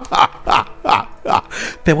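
A man laughing in a run of short, breathy bursts.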